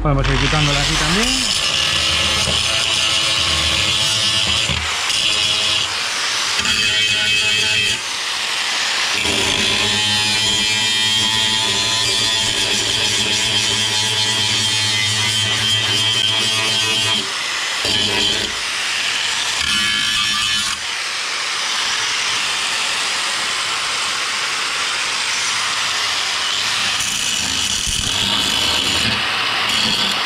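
Angle grinder running against sheet-steel car bodywork, grinding off old welds. The motor spins up at the start, then holds a steady whine that eases off briefly a few times as the disc is lifted and put back on.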